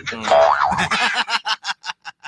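A cartoon 'boing' sound effect: a pitched twang that bends up and down, then breaks into a quick run of short pulses that die away.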